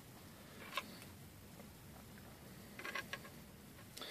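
Mostly quiet room tone with a faint click about a second in and a short cluster of small clicks near the end: a hard plastic 3D print being handled and lifted off the printer bed.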